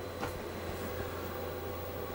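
Steady low hum with a faint hiss over it, with no distinct events.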